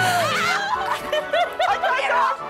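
People laughing and chuckling over background music.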